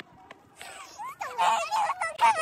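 Young women's high-pitched excited squeals and shrieks, starting about a second in and gliding up and down in pitch.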